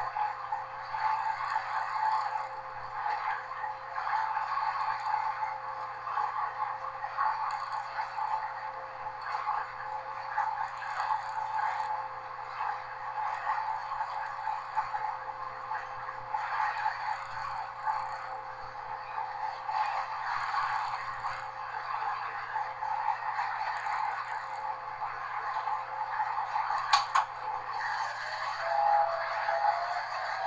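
Class 201 'Hastings' diesel-electric multiple unit under way, heard from inside its rear cab: a steady engine hum and a slightly wavering whine over the continuous running noise of wheels on rail. A sharp click comes near the end, followed by a rising tone.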